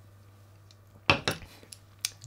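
An espresso cup set down on a desk: a sharp clink about a second in, followed by a few lighter knocks.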